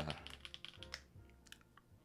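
Faint, irregular clicking of typing on a computer keyboard, a handful of keystrokes over about a second and a half, under quiet background music.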